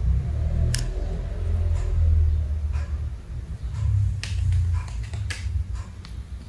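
A kitten's paws and claws, and the ball it is digging at, knocking against a plastic basket: sharp, irregular light clicks, about one a second, over a steady low rumble.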